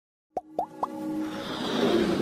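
Animated-intro sound effects: three quick pops that rise in pitch, about a quarter second apart, then a swelling musical build-up.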